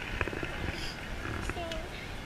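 Open-air stadium ambience with no band playing: distant voices and crowd murmur, a low rumble of wind on the microphone, and a few small clicks and knocks near the microphone.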